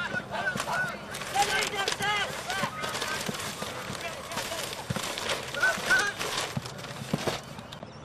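Players and spectators shouting during Australian rules football play: many short raised calls overlapping, heard at a distance, with a couple of dull knocks.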